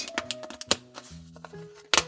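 Background music playing, with a few short sharp clicks as thick foam pieces are pushed out of a die-cut punch-out sheet, the loudest click near the end.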